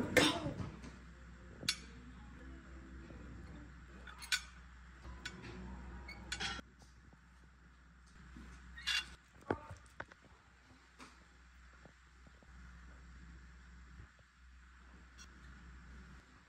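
Sparse light clinks and taps of kitchen utensils and a metal ring mould against a ceramic plate, about half a dozen short separate knocks, over faint background voices and a low steady hum.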